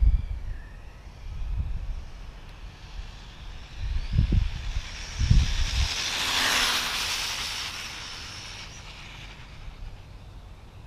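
Traxxas Bandit VXL electric RC buggy at full speed: its brushless motor whining and tyres hissing as it approaches, passes close by about six and a half seconds in, then fades away. Gusts of wind rumble on the microphone about four and five seconds in.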